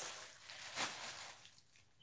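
Faint rustling and crinkling of a crumpled plastic bag being handled.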